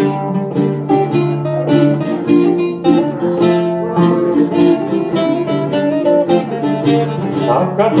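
Live early-music style dance tune on plucked strings (bouzouki and acoustic guitar) with recorder, played at a steady dance tempo.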